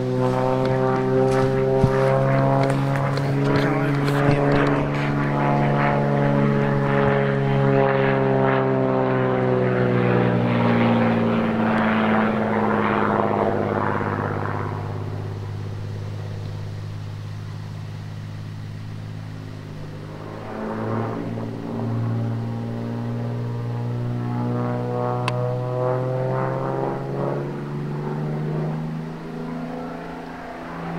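XtremeAir XA42 aerobatic monoplane's propeller and six-cylinder Lycoming engine drone as it flies aerobatics overhead. The pitch sinks slowly over the first half and the sound fades around the middle. It then grows louder again with the pitch climbing near the end.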